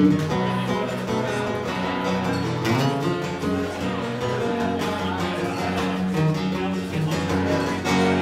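Acoustic guitar played solo, an instrumental break of picked and strummed notes.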